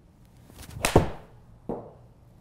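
Indoor golf shot with a Cobra RAD Speed pitching wedge: a short rising swish of the club, then a sharp, loud crack as the clubface strikes the ball about a second in. Under a second later comes a duller thud as the ball hits the simulator screen.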